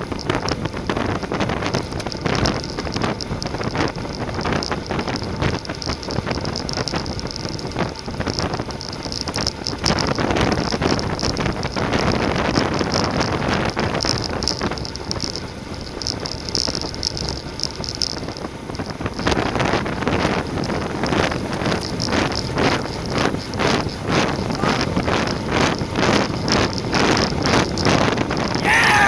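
Wind rushing over the microphone of a camera riding on a road bike at racing speed, mixed with tyre and road noise, with a regular pulsing in the last third.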